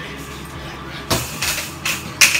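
A utensil scraping and stirring sauce around a small metal skillet, with two short scrapes about a second in and near the end, over a steady low hum.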